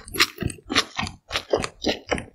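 Close-miked chewing of a mouthful of cold noodles with young radish kimchi: a quick run of wet, sharp chewing noises, about four or five a second.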